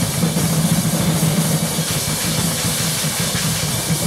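Several drum kits played together by a group of drummers in a dense, continuous roll, toms booming low under a wash of cymbals, with no clear beat.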